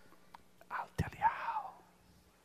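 A man whispering softly, faint and breathy, with one short click about a second in.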